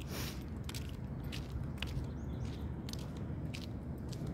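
Handling noise on a phone microphone: scattered scratches and rubbing clicks, with a short rustle just after the start, over a steady low rumble.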